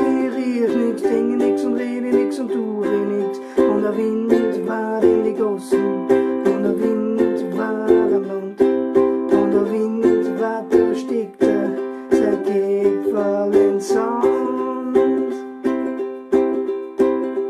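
Ukulele strummed in a steady reggae rhythm, chords changing every second or two, with short percussive strokes between the ringing chords.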